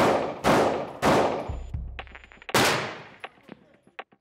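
Glock 17 9 mm pistol fired four times in an indoor range: three quick shots, then a fourth after a pause of about a second and a half, each report echoing and fading off the range walls.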